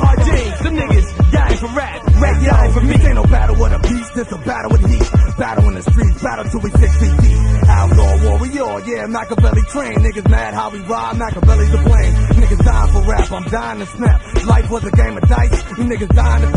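Hip-hop track with rapping over a deep, repeating bassline.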